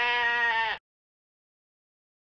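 A sheep bleating once, a single drawn-out call that stops abruptly under a second in.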